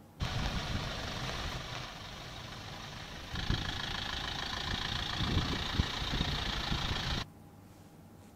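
Traffic on a rain-wet street: vehicle engines running with a steady hiss of wet road and rain, a truck passing close by. It starts abruptly, gets louder about three seconds in, and cuts off suddenly about seven seconds in.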